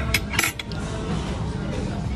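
Metal spoon clinking against a ceramic serving dish of vegetables two or three times in the first half second, over a steady background din.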